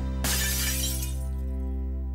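Glass-shattering sound effect: a sudden crash that fades away over about a second, over steady background music.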